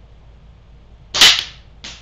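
.177 air gun firing a pellet, one sharp, loud shot about a second in, followed by a shorter, fainter click.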